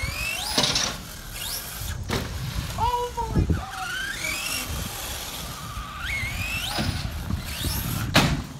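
Radio-controlled truck's motor whining up in pitch in short bursts as it accelerates again and again across asphalt, about four rising whines in all.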